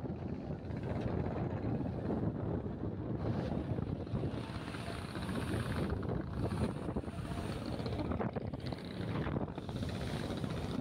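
Wind rushing and buffeting over the microphone on the open deck of a moving river launch, a dense, gusting noise with the boat's low rumble underneath.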